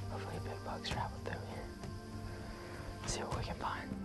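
Whispered speech over soft background music with sustained notes.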